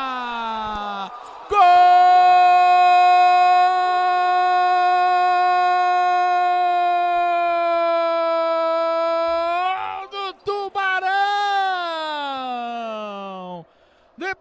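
Brazilian TV commentator's drawn-out goal cry, "Goool!", held on one steady high note for about eight seconds, then a few more shouted words falling in pitch.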